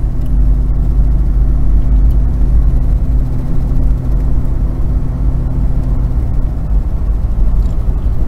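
Ford Explorer's 4.0 L V6 and road noise heard inside the cabin while cruising at about 35 mph: a steady low engine hum over tyre and road rumble, with the A4LD automatic in overdrive, which the PCM must still be commanding.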